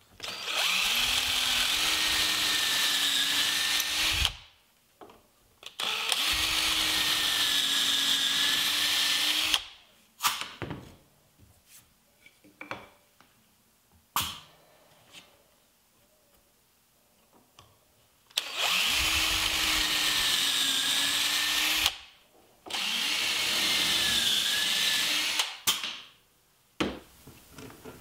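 Power drill boring pocket holes in poplar through a Kreg pocket-hole jig: four runs of three to four seconds each, the motor whine climbing to speed at the start of each. Light clicks and knocks between the runs as the board is shifted in the jig.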